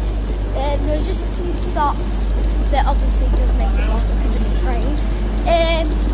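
Steady low hum of an electric train standing at a station platform, with a girl's short vocal sounds over it, the longest near the end.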